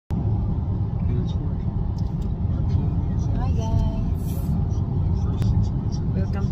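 Steady low rumble of a moving car heard from inside the cabin: road and engine noise. A short voice sounds about three and a half seconds in.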